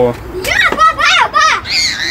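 Children's high-pitched voices calling out excitedly, starting about half a second in.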